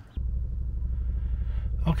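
A steady low rumble that starts abruptly just after the beginning and holds evenly at a fair level.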